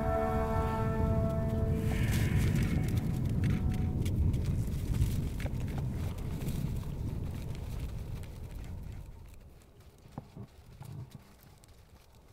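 Held music tones fade out in the first few seconds. They give way to a low rumbling outdoor ambience with scattered clicks and knocks from reindeer close by. It grows quieter near the end.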